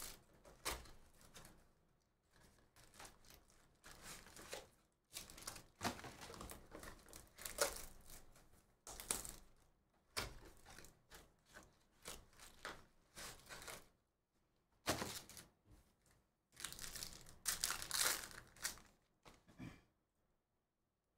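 Plastic wrapping on a trading-card box crinkling and tearing as hands pull it off, in faint irregular spurts with a brief pause about fourteen seconds in.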